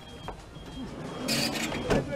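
Someone climbing into a van through its open door: a brief scuffing rush about a second in, then a sharp knock just before the end. A faint high beep repeats in the background.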